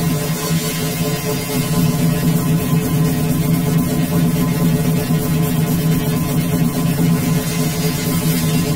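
Electronic music with steady, sustained low tones holding at an even loudness.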